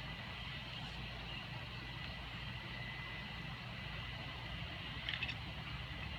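Steady low rumble of distant traffic under a constant faint high-pitched drone, with a brief cluster of high chirps about five seconds in.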